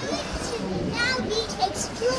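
Children's voices in a busy hall: chatter and high-pitched calls, the loudest about a second in and again near the end.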